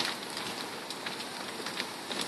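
A burning house crackling: a steady hiss with scattered sharp pops and a louder pop at the start.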